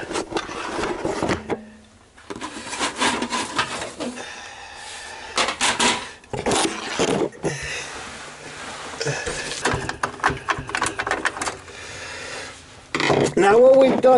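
Irregular clicks, knocks and rubbing of hands and a screwdriver working inside a desktop computer case, as the CPU cooler's four screws are loosened and the fan-and-heatsink assembly is lifted out.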